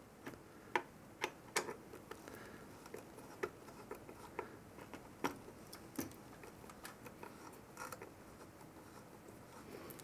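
Faint, irregular small clicks and taps of metal parts being handled: the CPU cooler's mounting screws being lined up and started by hand on the bracket bolts.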